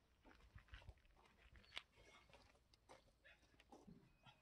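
Near silence, with faint scattered small clicks and ticks, one a little louder just under two seconds in.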